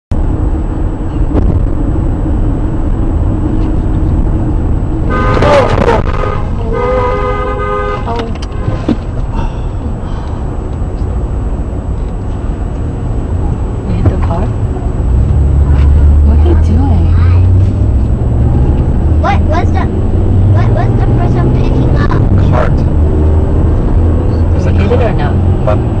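Steady road and engine rumble heard inside a moving car's cabin, with a car horn sounding twice, about five and seven seconds in.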